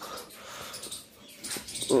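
Close breathing and snuffling of a buffalo taking roti from a hand, with a few short breathy puffs about one and a half seconds in.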